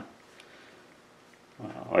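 Quiet room tone with one faint small click about half a second in, then a man's voice starting near the end.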